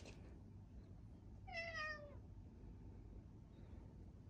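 A cat meowing once, about halfway through: a single call of under a second that falls slightly in pitch.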